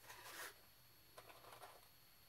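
Cardboard drawer of a box of Diamond strike-on-box wooden matches sliding open with a short, quiet scrape. About a second later come a few faint rustles and clicks as the matches are handled and one is picked out.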